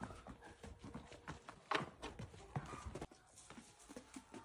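Ostriches stepping and stamping on bare packed dirt while dancing: faint, irregular soft thuds, one louder a little before the middle.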